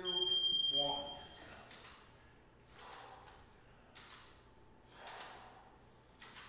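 Interval timer's electronic beep, one steady high tone about a second and a half long, marking the start of a work interval. It is followed by rhythmic breaths during dumbbell rows, about one a second.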